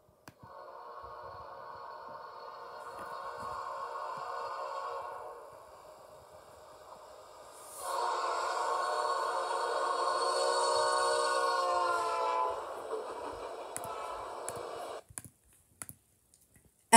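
Nathan P5 five-chime locomotive air horn on a train, played back through a laptop's speakers: one long chord, a short lull, then a louder blast whose chord slides lower near its end. It carries on quieter for a couple of seconds and then cuts off.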